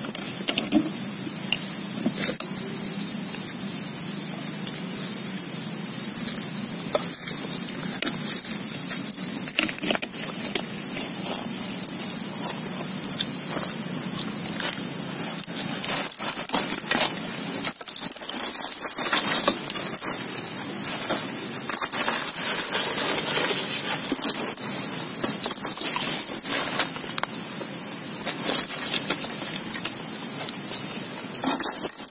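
Crickets chirring in a steady chorus, a continuous high-pitched drone at two pitches, with close-up chewing and soft clicks, busier in the second half.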